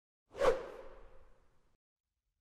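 Whoosh sound effect of an intro logo reveal: a single swell a little into the clip that dies away over about a second.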